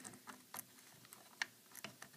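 A few faint, sharp clicks and ticks of a threaded microscope camera adapter being screwed by hand onto a stereo microscope's trinocular port.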